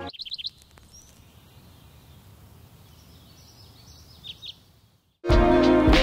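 A small bird chirping over quiet outdoor background noise: a quick run of about five high chirps at the start and two more near the end. Loud music comes in about five seconds in.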